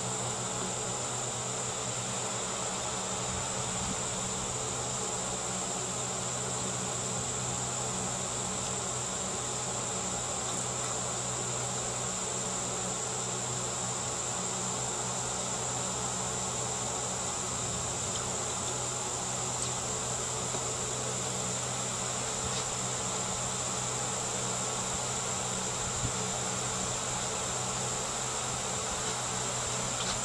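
Electric blow-off fan running steadily with a low hum, under a constant high-pitched insect drone.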